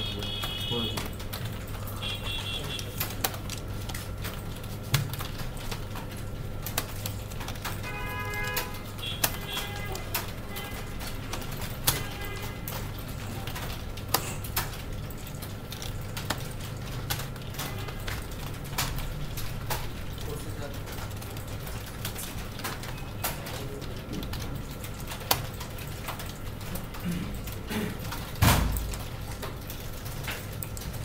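Computer keyboard being typed on: scattered single key clicks over a steady low hum. There are a few brief high chirps, and a low thump near the end.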